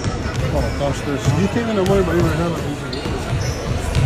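Basketballs bouncing on a hardwood gym floor, a few irregular knocks, over spectators chatting close by and a voice exclaiming "oh my".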